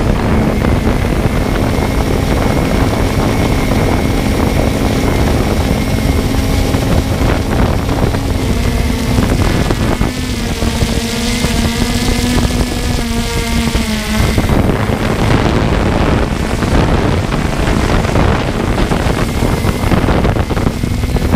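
Quadcopter drone's propellers humming at a steady pitch, with wind rushing over the microphone. A second, wavering tone joins for about four seconds in the middle.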